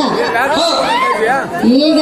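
Several voices talking over one another. Near the end one voice begins a long, drawn-out held note.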